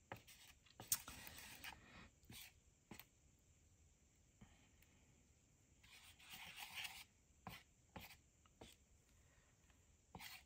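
Faint scraping and light taps of tweezers on a paper plate as ink-soaked cotton fabric is pushed around, with a longer rub about six seconds in.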